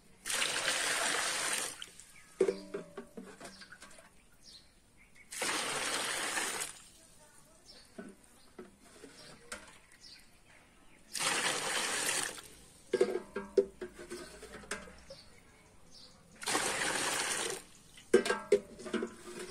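Water scooped with a plastic mug from the metal cooling pot of a homemade still and poured out in four splashing pours, each about a second and a half, with the mug clinking against the pot between them. The warmed condenser water is being emptied so that cold water can replace it.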